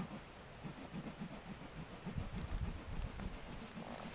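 Low, irregular thumps and rumbling of handling noise on a small handheld camera's microphone as it is moved about, heaviest in the middle, over faint hiss.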